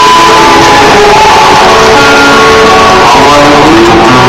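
Live music: a man singing held, gliding notes into a microphone while playing guitar. The recording is very loud throughout.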